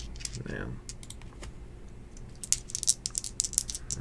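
Computer keyboard keys clicking as someone types, in scattered clicks that come in a quick run in the second half.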